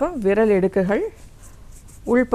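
A woman speaking for about the first second, then a short pause.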